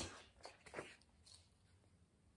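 Near silence: room tone, with two faint short handling sounds in the first second as a sheet of card is picked up.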